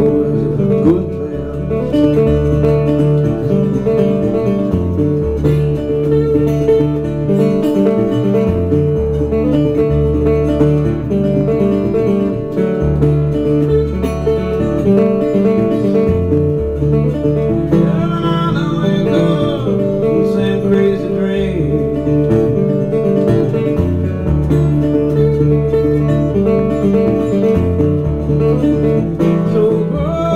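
Solo acoustic guitar played live in a folk-blues style: steady low bass notes under higher picked notes, with no words sung.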